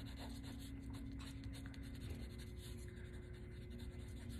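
Pencil tip scratching faintly on paper in many short, quick strokes as dark shading is worked in.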